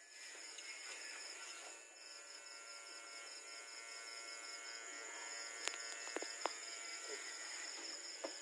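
Faint steady chorus of night insects, crickets trilling evenly, under a steady hum. Three short light clicks a little past halfway.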